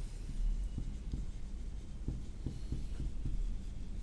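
Marker pen writing on a whiteboard: a run of short, faint strokes as a word is written out.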